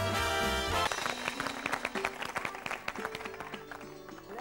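A brass-led TV show jingle that stops about a second in, followed by a group of people clapping.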